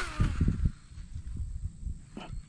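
Cast with a baitcasting rod and reel: a sharp swish, then the spinning spool's faint whir falling in pitch as it slows while the frog lure flies out. Loud low thumps follow in the first second.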